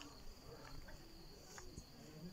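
Faint steady high-pitched trill of crickets at night, with a few soft footsteps.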